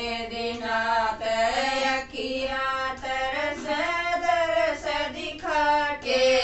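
Women singing a Haryanvi devotional bhajan together in sustained, bending melodic phrases, with short breaks between lines.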